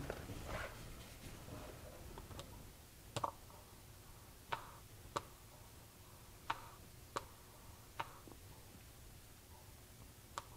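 Faint small clicks, about seven of them at irregular intervals, as gear oil is squeezed from a plastic bottle through a tube into the fill hole of a 1955 Porsche 356 steering box.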